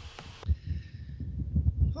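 Wind buffeting an earbud microphone outdoors: irregular low rumbling thumps, starting about half a second in.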